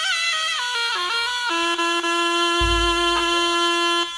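Slompret, the Javanese double-reed shawm of jaranan music, plays a descending melodic phrase, then holds one long, steady note. A deep low boom, a drum or gong, sounds under it a little past halfway.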